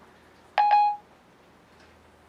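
A single short, steady beep from an iPhone 4S's Siri, about half a second in and lasting about half a second. Siri gives no answer after it because it is not connecting to the network.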